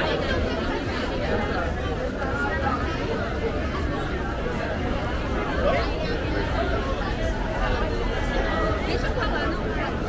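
Steady chatter of many people talking at once, from diners at open-air tables and passersby.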